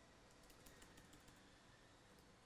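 Faint, scattered keystrokes on a laptop keyboard as code is typed.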